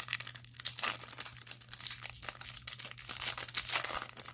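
Foil wrapper of a freshly torn-open Pokémon trading card booster pack crinkling irregularly as it is handled and the cards are slid out.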